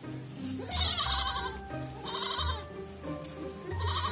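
Goats bleating, three wavering bleats: a long loud one about a second in, a shorter one at about two seconds, and a brief one near the end, over background music.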